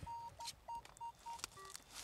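Nokta Makro Legend metal detector giving faint, short target beeps, about five at one mid pitch in quick succession, then a couple of briefer higher and lower blips near the end, as the coil is swept over a buried target. The target reads in the low-to-mid 40s on the detector.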